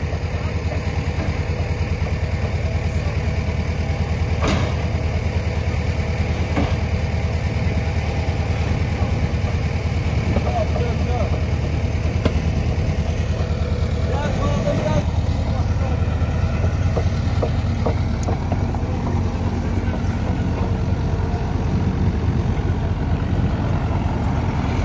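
Kubota U55-4 mini excavator's diesel engine running steadily, a continuous low drone, with a couple of brief knocks in the first seconds.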